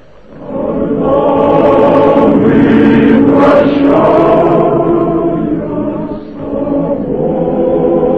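Choir singing slow, sustained chords as a soundtrack, swelling in about a second in and dipping briefly near the end before carrying on.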